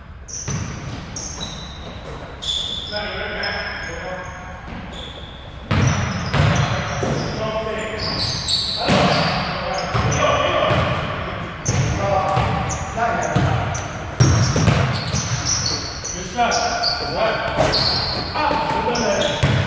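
Basketball bouncing on a hardwood gym floor with sneakers squeaking and players calling out, all echoing in a large hall. The play gets louder about six seconds in.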